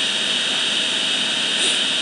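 Steady hiss of background noise with a thin high whine running through it, between sung lines.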